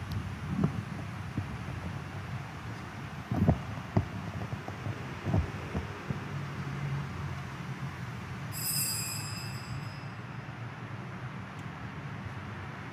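Room noise of a large church during communion: a steady low rumble with a few soft knocks, and a brief high-pitched ringing tone about two-thirds of the way through.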